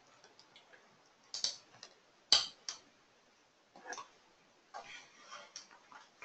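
A few scattered sharp clicks, the loudest a little over two seconds in, then softer rustling noises near the end.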